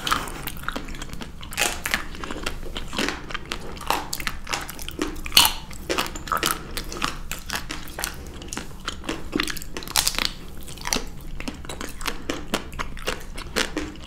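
Close-miked biting and chewing of chocolate-shelled Magnum ice cream bars. The hard chocolate coating cracks into irregular crisp crunches and clicks, several a second, with one sharper snap about five seconds in.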